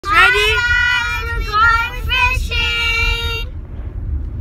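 Children singing together in a few held notes, stopping about three and a half seconds in, over the low rumble of a car's cabin.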